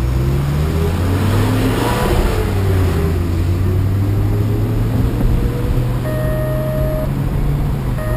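2010 BMW M6's V10 engine heard from inside the cabin. Its note rises over the first two seconds as the car picks up speed, then runs steadily at low revs. About six seconds in, a mobile phone gives a steady electronic ringing tone lasting about a second.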